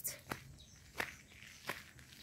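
Faint footsteps of a person walking: three steps about two-thirds of a second apart.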